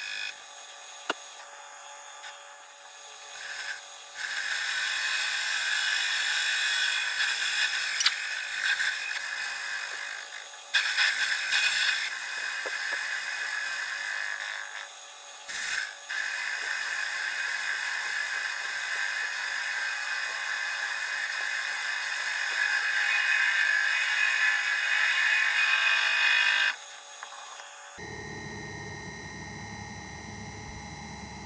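Metal lathe trepanning a flywheel blank: a trepanning tool cutting into the turning metal, a steady high cutting noise in stretches of several seconds with short breaks as the cut pauses. Near the end the cutting stops and a quieter steady hum takes over.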